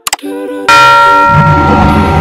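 Outro music jingle: a few quick pitched notes, then a sudden loud bell-like chime with a low hit about two-thirds of a second in, its tones ringing on.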